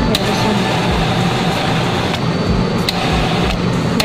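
Self-serve soda fountain dispensing carbonated soda into a large foam cup over ice: a steady rush of pouring, fizzing liquid, with a couple of light clicks.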